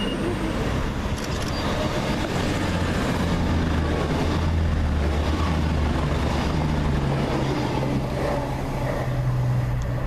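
CrossCountry Voyager diesel multiple unit passing close by: a steady low drone of its underfloor diesel engines with the rumble of its wheels on the rails, swelling to its loudest in the middle as the train goes by.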